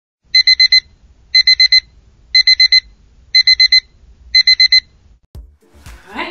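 Electronic alarm clock beeping: five bursts of four quick high-pitched beeps, about one burst a second, stopping just before the end.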